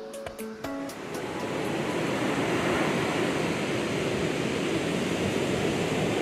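Background music with plucked notes ends about a second in, giving way to the steady wash of ocean surf breaking on the beach.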